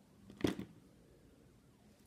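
A single short handling noise about half a second in, as hands move tools on a workbench; otherwise quiet room tone.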